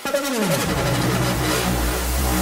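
Progressive house track coming back in hard: a falling pitch sweep at the start, then a deep, sustained bass line entering about half a second in under steady rhythmic synth layers.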